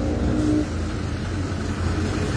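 Engines of parked pickup-truck patrol cars idling close by: a low steady rumble, with a higher steady hum over it that stops about half a second in.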